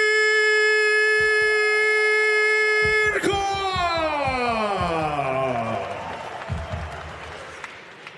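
Ring announcer's voice drawing out the end of a fighter's name in one long, level note for about five seconds, then sliding down in pitch. Crowd cheering rises underneath as the note falls away.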